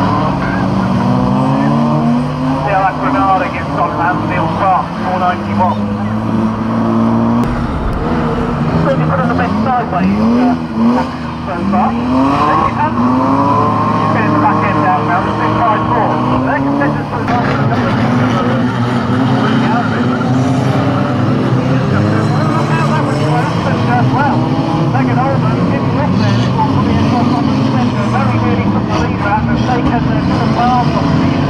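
Several banger racing cars' engines running together, their pitch rising and falling again and again as the drivers accelerate and lift off around the track.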